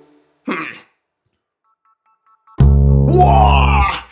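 Double bass: a short falling swoop, then after a pause a deep, loud held note with a sliding tone above it, starting about two and a half seconds in.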